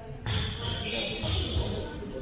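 Handball bouncing on a sports hall floor, a series of low thuds, with voices in the hall.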